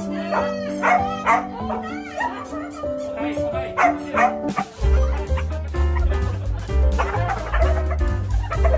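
Background music with a Samoyed yipping and barking over it in the first half. About halfway through, the music changes to a track with a heavy, steady beat.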